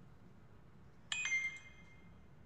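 A short electronic chime about a second in: a few bright tones struck together, ringing briefly and fading within about half a second, typical of a computer notification sound.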